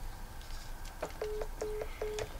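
Smartphone's call-ended tone after a call is hung up: three short, low beeps about 0.4 s apart, starting a little past a second in, preceded by a faint tap or two.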